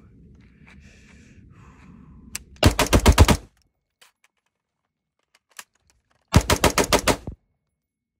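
AR-style rifle fired in two rapid strings of about six shots each, a Bill drill: the first string comes near three seconds in, the second about six and a half seconds in. Between them, a light click or two of the magazine reload.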